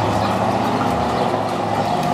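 A motor vehicle's engine running steadily in the street.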